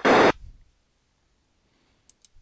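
A short burst of radio static, about a third of a second, from an Icom IC-R20 receiver as the received FRS transmission drops out: the squelch tail at the end of the transmission.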